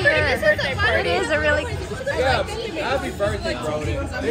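Speech: several people chatting and talking over one another.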